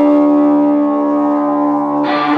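Live rock band holding one sustained chord on guitars and keyboard, steady and without drum hits; the band's playing changes and gets busier right at the end.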